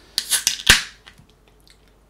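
Ring-pull on a 440 ml aluminium can of fruited sour beer being opened: a short hiss of escaping gas, then a sharp crack as the tab breaks the seal, trailing into a brief fizz.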